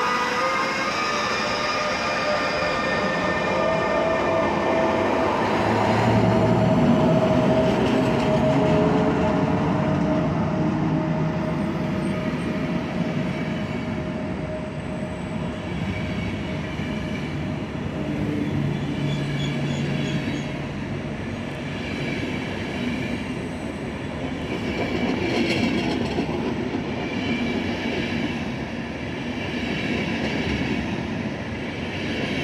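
ÖBB class 1116 Taurus electric locomotives hauling a passenger train, their traction equipment giving a whine that sinks slowly in pitch over the first dozen seconds as they draw away. The coaches then roll past with a steady rumble of wheels on rails and a few brief high squeals in the second half.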